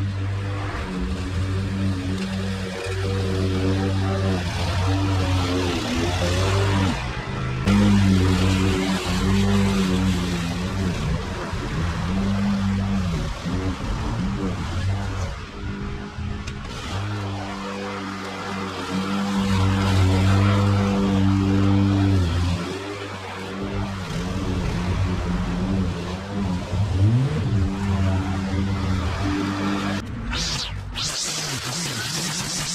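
Petrol push lawn mower engine running under load while cutting long grass, its pitch dipping and recovering every few seconds, with music playing over it.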